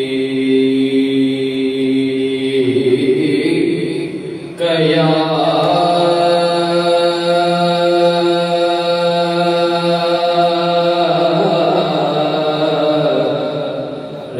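A man's solo voice singing a naat unaccompanied, drawing out long held notes: one ends about three seconds in, a new, higher note comes in near four and a half seconds and is held steadily until about eleven seconds, then the line tails off toward the end.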